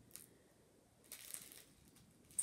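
Faint rustling of a small paper card being handled, starting about a second in, after a near-silent start with a slight tick.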